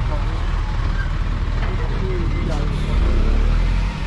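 Vehicle engine idling with a steady low rumble that swells louder near the end, under faint background voices.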